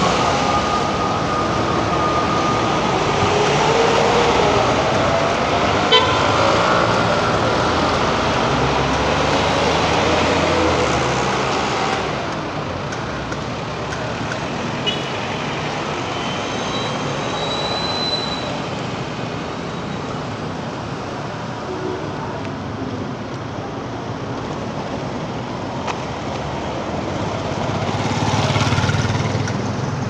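City street traffic at an intersection: cars, motorcycles and a minibus driving past close by, heaviest in the first twelve seconds, then a lighter steady hum, and another vehicle passing near the end. A single sharp click comes about six seconds in.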